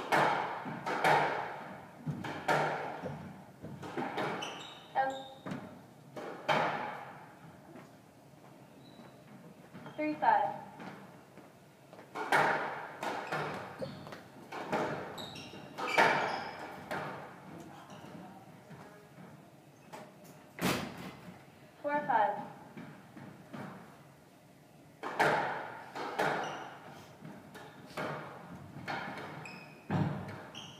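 A squash rally: a hard rubber ball struck by rackets and smacking the court walls, sharp echoing hits about every second or two, with sneakers squeaking on the wooden floor a few times.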